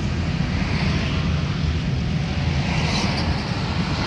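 Steady road noise heard from inside a moving car: a low rumble with a hiss of wind and tyres over it.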